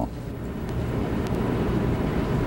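Steady low background rumble of a large ballroom hall, with no music yet and a constant low mains hum underneath.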